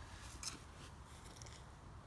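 Very quiet outdoor background: a faint steady hiss, with a slight rustle about half a second in, such as a handheld phone being moved.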